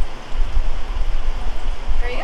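Wind buffeting the microphone: a loud, rushing noise with an uneven low rumble.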